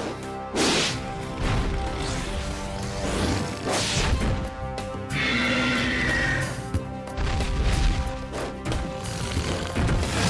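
Dramatic action score with sharp hits. About five seconds in, a cartoon monster roar enters: Godzilla's high, screeching cry, lasting about a second and a half.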